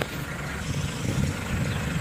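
Wind rumbling on the microphone outdoors: a steady, even noise with no distinct events.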